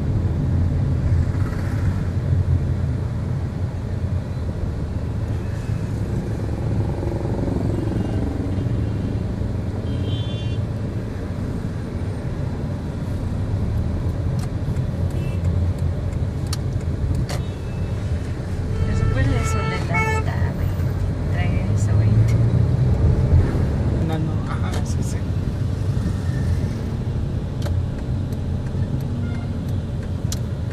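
Steady low engine and road rumble of a car heard from inside its cabin while driving in city traffic, with short vehicle horn toots from the surrounding traffic around a third of the way in and again past the middle.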